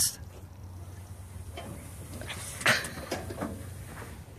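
A person sliding down a metal playground slide: faint rubbing, with a short, louder scrape about two and a half seconds in, over a steady low wind rumble on the microphone.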